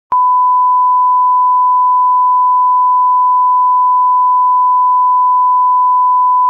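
A steady 1 kHz test tone, the single-pitch reference tone that accompanies television colour bars, played loud and unbroken. A short click marks its start.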